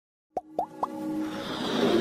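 Animated logo intro sound effects: three quick pops that glide up in pitch, about a quarter of a second apart, starting a moment in, then a swelling whoosh over held musical tones that builds toward the end.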